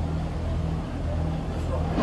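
Steady low hum of running machinery with a faint background wash of noise.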